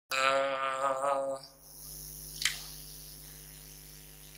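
A man's voice holding one drawn-out note for about a second and a half, then cutting off. The steady low hum of a public-address microphone follows, with a single sharp click about two and a half seconds in, as the microphone is handled.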